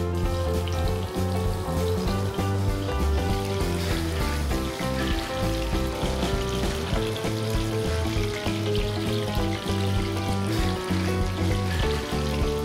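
Background music over bacon-wrapped beef tenderloin sizzling in hot oil in a ridged non-stick grill pan, a steady frying hiss as the meat starts to cook.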